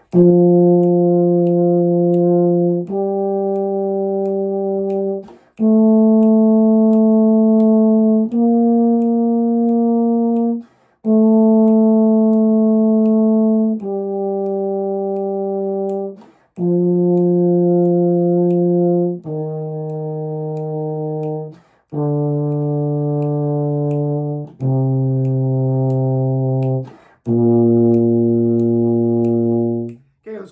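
Euphonium playing a B-flat major scale in long whole notes, with a short breath between each. It steps up to the top B-flat about ten seconds in, then walks back down note by note to the low B-flat near the end.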